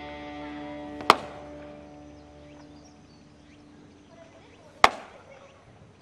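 A baseball smacking into a catcher's mitt twice, about a second in and again nearly four seconds later, each a single sharp crack. Background music with held chords fades out during the first few seconds.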